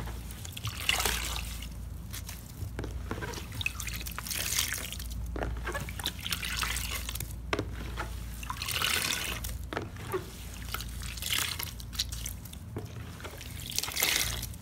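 Small cut sponge pieces squeezed and kneaded by hand in a tub of water to rinse out the soap: wet squelching, with water trickling and dripping out of the sponges. It comes in repeated squeezes, one every two seconds or so.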